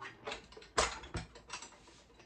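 Small decorative wagon being handled: its pull handle clicking and knocking at the pivot as it is moved, a string of short light clicks with the loudest knock about a second in.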